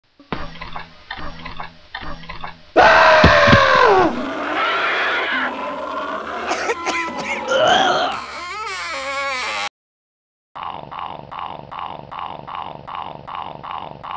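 Horror-film sound effects laid over the animation: after a short rhythmic opening, a loud cry bends downward in pitch about three seconds in, followed by several seconds of wavering, groaning sounds. After a brief silence, a steady pulse repeats about three times a second.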